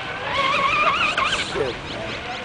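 Radio-controlled model speedboat's motor running at speed as a high-pitched whine. It rises, then wavers rapidly up and down in pitch, as if the revs jump while the hull skips over the water.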